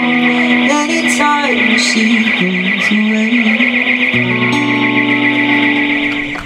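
Acoustic guitar played through the close of a song, ending on a final chord that starts about four seconds in and rings out.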